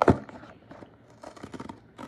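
A small cardboard blind box being handled: a sharp knock at the very start, then faint rustling and a few light taps as it is moved about and set on the table.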